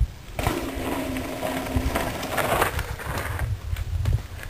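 Downhill mountain bike rolling in and off a large drop: tyre rolling noise with a steady buzz for a couple of seconds, then sharp knocks as it touches down and rolls out, with low wind rumble on the microphone.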